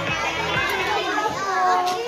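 Many children's voices chattering and calling out at once, a busy hubbub of young voices.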